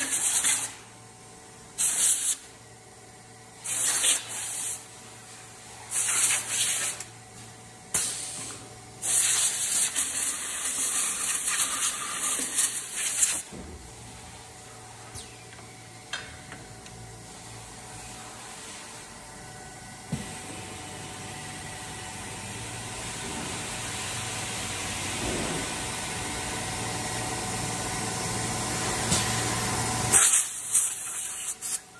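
Short hissing blasts from a compressed-air blow gun, about every two seconds, then one longer blast of about four seconds. After that comes a steady machine hum from the wax-injection mould press, slowly growing louder.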